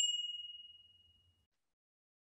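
A single bell-like ding sound effect, one clear ringing tone that fades away within about a second and a half.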